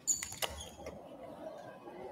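A short, high-pitched creak with a few sharp clicks just after the start, followed by a quieter, steady rustle of movement.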